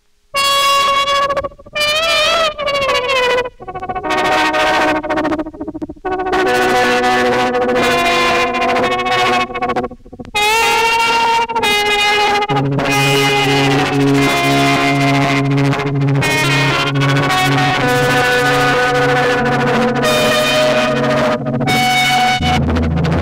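1953 Fender Dual Pro 8 lap steel guitar played with a slide bar through an ARP 2600 clone synthesizer, sustained notes gliding up and down between a few short breaks. About halfway in, a steady low tone enters under the notes and holds.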